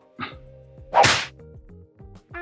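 A single short, sharp swish about a second in, like a whip crack.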